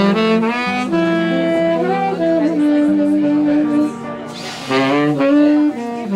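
Saxophone playing a slow jazz ballad melody in long, held notes, with a brief airy hiss a little past four seconds in.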